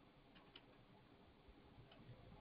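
Near silence: room tone with a few faint, irregular clicks from a computer mouse as a web page is scrolled.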